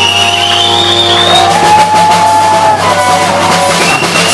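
Live rock band playing loudly: electric guitar holding long high notes that bend and slide in pitch, over bass and a drum kit.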